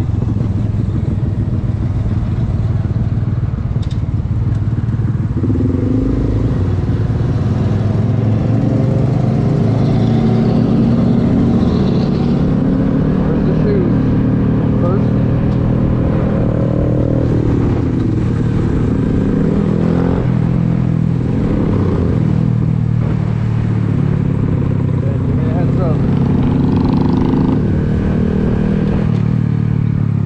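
Honda Grom's small single-cylinder engine running while riding in city traffic, its pitch rising and falling with throttle and gear changes, over steady wind and road rumble.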